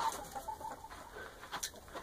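Chickens clucking quietly, a few short calls in the first second.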